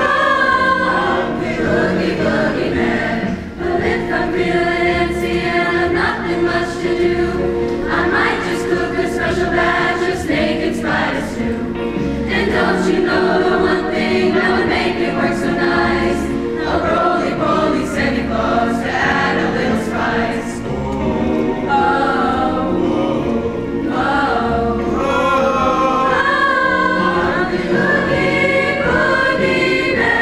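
Mixed high school choir of girls' and boys' voices singing in harmony, with held chords and moving melody lines, led by a conductor.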